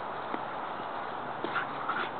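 A young dog pawing and nosing a toy in loose dirt: a few soft knocks over a steady outdoor hiss, with a couple of short high calls near the end.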